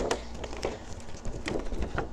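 A cardboard toy box being opened and its plastic-windowed inner tray slid out of the sleeve: a few light clicks and scrapes of cardboard and plastic, scattered through the moment.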